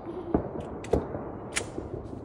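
Three sharp metallic clicks from a gun's action as it is cocked back before firing, the last click the brightest.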